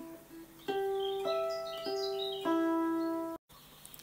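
Hollow-body electric guitar playing four single notes one at a time, about half a second apart, moving between the G string at the 12th fret and the high E string, each note ringing on under the next. The notes cut off suddenly about three and a half seconds in.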